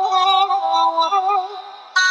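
Solo voice singing a slow romance melody, its held notes wavering with vibrato, over musical accompaniment; the phrase fades out near the end.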